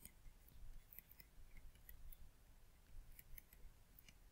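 Near silence with faint, scattered ticks and light scratches of a stylus writing by hand on a tablet.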